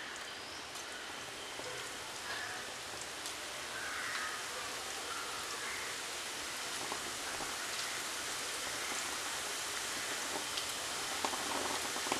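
Onion pakoras deep-frying in hot oil: a steady sizzle of bubbling oil that grows a little louder a few seconds in as more batter goes into the pan.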